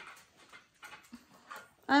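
Faint, scattered short sounds from small chihuahuas and a chihuahua puppy close by, moving about and sniffing one another. A woman starts speaking at the very end.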